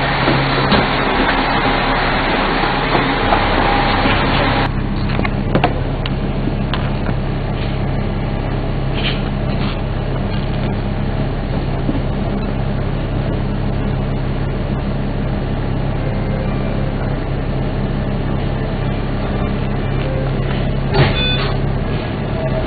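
Dennis Trident double-decker bus with its diesel engine running, a steady low hum. A broad rushing noise covers it for the first four or five seconds and then cuts off suddenly, and a brief high tone sounds near the end.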